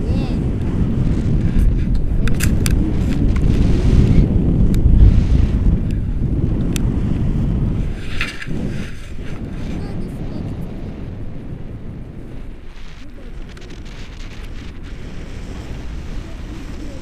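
Wind buffeting the microphone of an action camera carried in paraglider flight: a loud, low rumble that eases about halfway through, with a few clicks from the camera being handled.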